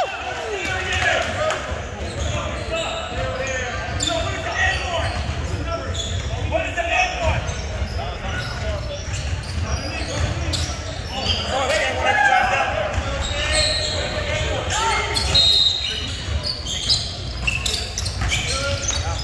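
Basketball being dribbled and bouncing on a hardwood gym floor, frequent short knocks, with players' voices calling out in the background and the echo of a large gymnasium.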